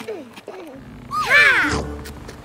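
A cartoon puppy's voiced cry: one loud, short, bark-like call with a swooping pitch, lasting about half a second, starting just after a second in. It is heard over background music.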